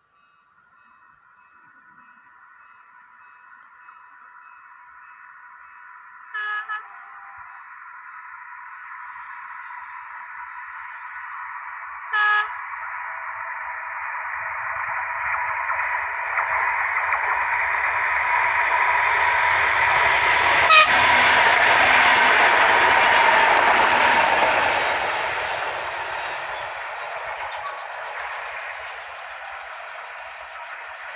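RENFE UT-470 regional electric multiple unit approaching and passing, giving short horn blasts about six and twelve seconds in. Its rumble grows steadily to a peak about two-thirds of the way through, then fades as it goes by.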